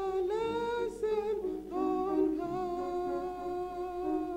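A woman singing a hymn solo into a microphone, holding long, slow notes that step from one pitch to the next.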